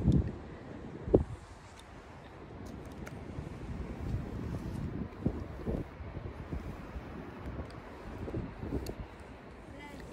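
Wind noise on a handheld phone's microphone over faint outdoor ambience, with a single soft knock about a second in.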